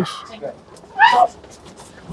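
A person's single short, high-pitched yelp about a second in, rising and then falling in pitch.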